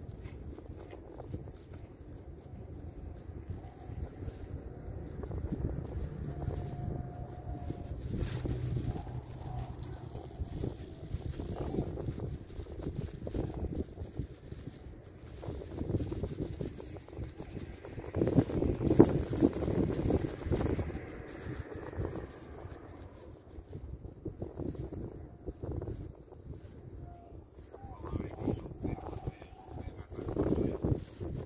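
Wind rumbling on the microphone, with indistinct voices that grow loudest about two-thirds of the way through.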